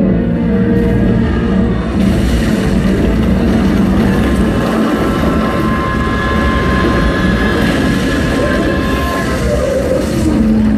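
Projection-show soundtrack over outdoor loudspeakers: a loud, dense rumbling destruction effect that thickens about two seconds in, with music under it and a steady high tone held through the middle, accompanying the projected wall breaking apart.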